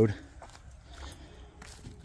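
A few faint footsteps and scuffs on dry leaves and dirt.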